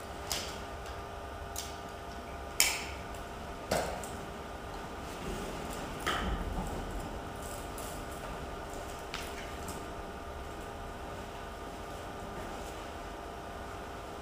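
Firefighter's SCBA harness and turnout gear being handled while the pack is put on: a few scattered sharp clicks and knocks of straps, buckles and gear, with rustling in between.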